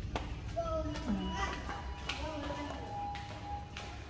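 Faint voices and music in the background over a steady low rumble, with one held note near the end.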